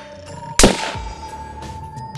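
A single sharp, loud hit about half a second in, fading quickly, with a steady tone held underneath: a dramatic impact stinger marking a title card.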